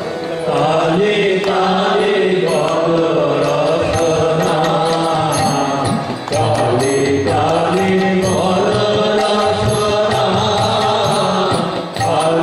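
Devotional kirtan to Kali: harmonium and violin playing a sustained melody under chanted singing. The phrases break briefly near the start and again around six seconds.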